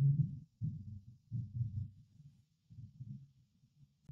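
A run of low, muffled bumps, about half a dozen in irregular succession, the first the loudest, over a faint hiss.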